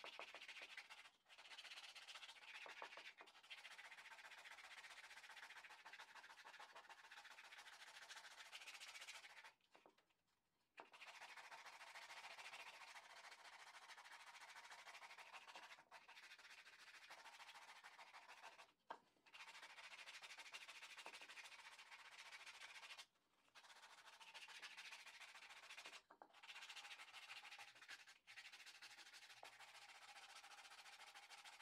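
Sandpaper rubbed by hand over a small dried wooden bowl: a faint, steady rubbing broken by several short pauses, the longest about ten seconds in.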